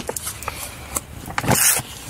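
Light handling noises: a few soft taps and knocks, and a short rustle about one and a half seconds in.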